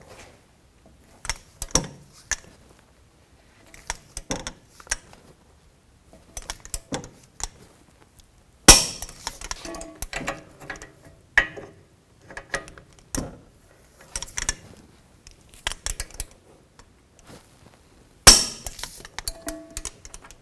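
Torque wrench working the strut-to-knuckle nuts, with small ratcheting clicks and metal clinks, and two sharp loud clicks, about nine seconds in and near the end, as it reaches its 155 ft-lb setting.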